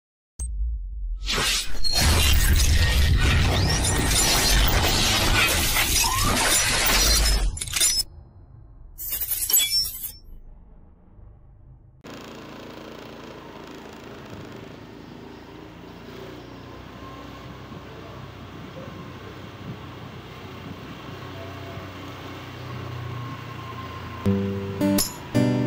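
A loud, noisy crash-like burst lasting about seven seconds, followed by a shorter burst about nine seconds in. After a brief lull it gives way to a much quieter, steady low background ambience of a night street.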